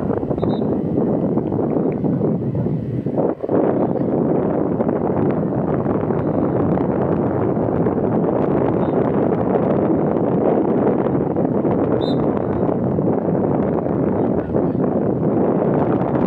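Steady wind noise buffeting the microphone: a dense, even rumble and hiss with no clear tones, dropping out briefly about three seconds in.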